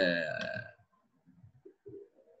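A man's short, low-pitched vocal sound, a drawn-out 'uhh' or throaty burp-like noise that fades out within the first second.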